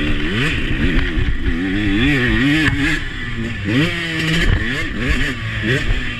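Husqvarna 125 two-stroke motocross bike's engine, heard from a camera on the bike while being ridden, revving up and easing off repeatedly. Its pitch climbs sharply at the start, wavers up and down, drops back about halfway, then climbs sharply again twice.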